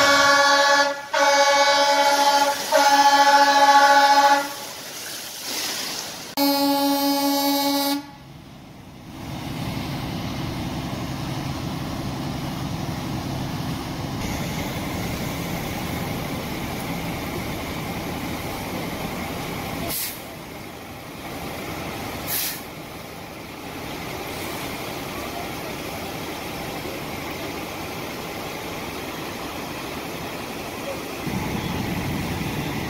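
Fire apparatus air horns sounding the evacuation signal: three loud blasts in quick succession, then after a short gap a fourth, lower-pitched blast. Afterwards a steady engine rumble of apparatus running at the scene.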